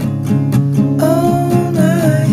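A song with acoustic guitar strumming a steady rhythm. A long held melody note, slightly wavering, comes in about halfway through.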